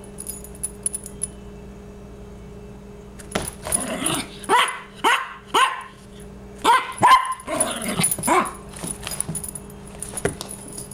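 Yorkshire terrier barking: a run of about ten short, sharp barks from about three seconds in, lasting some five seconds, given from a play-bow crouch.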